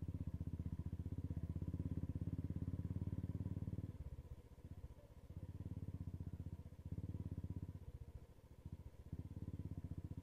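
A motorcycle engine running at low speed with a rapid, even exhaust beat. The beat drops away twice, about four seconds in and again near the end, as the throttle is eased off.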